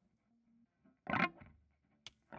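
Electric guitar played through a Fender 5F1 Champ-clone tube amp: a single short strum about a second in, cut off after a moment, with near silence around it.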